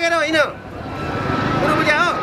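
Street noise: the low rumble of a vehicle grows steadily louder through the pause, with a man's voice drawing out a word in the first half second.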